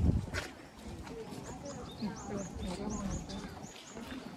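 Walking-crowd ambience on a stone path: background chatter of passers-by and footsteps, with a thump right at the start. From about a second and a half in, a string of short high chirps repeats roughly twice a second.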